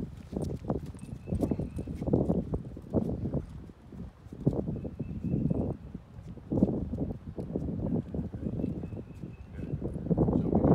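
Wind buffeting the microphone in uneven low gusts, mixed with footsteps of a man and a Doberman walking on a concrete driveway.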